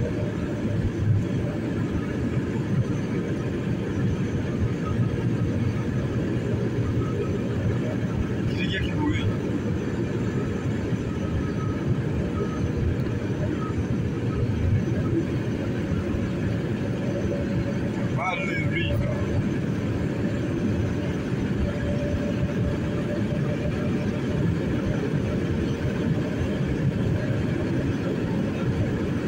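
Car travelling at about 100 km/h, heard from inside the cabin: a steady rumble of tyre, wind and engine noise. Two short higher sounds come through it, about 9 and 18 seconds in.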